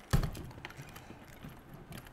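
Workbench handling sounds on an RC nitro car: a single knock just after the start, then light clicks and taps as a hex driver is fitted to an engine-mount screw.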